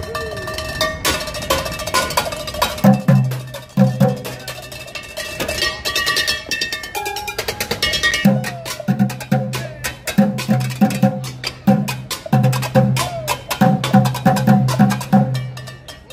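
Upbeat percussion music: rapid metallic and wooden strikes, like pots, pans and kitchen utensils drummed, over a backing track with held tones. A deep pulsing bass beat comes in about three seconds in.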